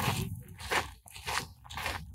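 Footsteps crunching on a red dirt and gravel path, about two steps a second.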